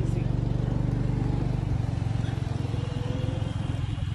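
A road vehicle's engine running close by, a steady low throb, with a faint rising tone a little past halfway.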